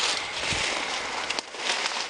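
A crackling, rustling noise with a couple of sharp clicks, without any words.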